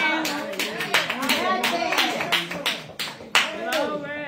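Congregation clapping hands in a steady rhythm, about three claps a second, with voices calling out over it. The clapping stops shortly before the end.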